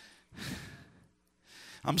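A man's sigh into a handheld microphone: a long, breathy exhale about half a second in, then a shorter breath in just before he speaks again.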